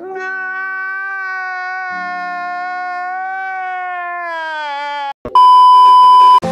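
A long held, high, wailing note with a slight waver lasts about five seconds and slides down at the end. It is cut off by a loud, steady, single-pitch beep lasting about a second, like a censor bleep.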